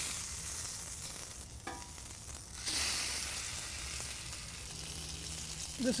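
Thin bacon strips sizzling on a hot flat-top griddle, a steady frying hiss that dips for a moment near the middle and then picks up again.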